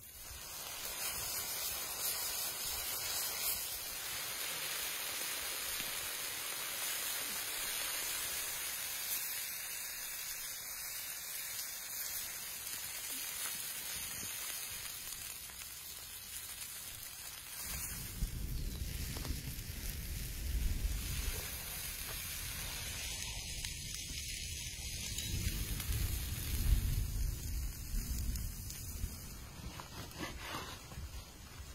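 Strips of animal fat, then sliced vegetables, sizzling on a hot flat griddle plate in a steady hiss. From about halfway a lower rumble and a few louder knocks join in.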